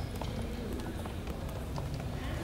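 Busy airport-terminal ambience: hard-soled shoes and heels clicking irregularly on the hard floor as people walk past, over a steady murmur of indistinct background voices.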